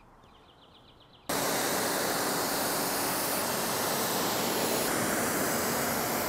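Pressure-washer water jet spraying against a car's bodywork during the rinse: a loud, steady hiss that starts suddenly about a second in, with a faint steady hum beneath it.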